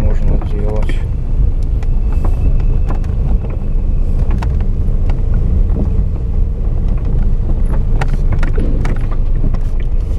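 Car cabin noise while driving slowly: a steady low rumble of engine and tyres, with scattered clicks and knocks.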